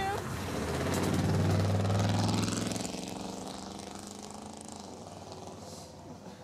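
Pickup truck engine revving up to a peak in the first couple of seconds, then fading away.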